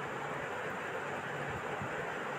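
Steady background hiss with no distinct event in it.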